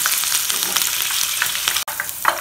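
Hot oil sizzling steadily as a batch of gram-flour-coated peanuts deep-fries in a wok. The sound drops out for an instant near the end.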